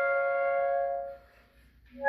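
Two clarinets playing a duet, holding a sustained chord that dies away a little after a second in. After a short pause the two clarinets come back in together on the next phrase at the end.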